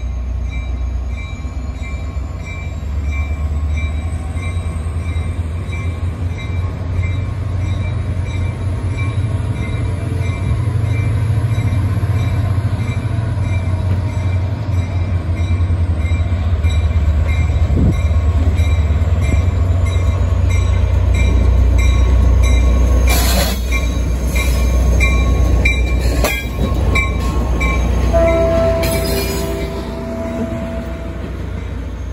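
Caltrain diesel locomotive approaching and passing close by, its engine rumble building as it nears, with a rapidly repeated high ringing throughout. Wheels knock over the rail joints as it goes by, and a short horn chord sounds near the end.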